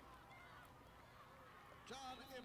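Near silence with faint, indistinct voices in the background, and a brief louder call with falling pitch near the end.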